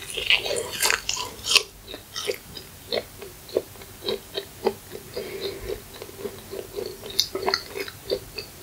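Close-miked bite into the crisp fried crust of a McDonald's pie, crackling sharply for the first second or so, then steady chewing with short wet mouth clicks and smacks several times a second.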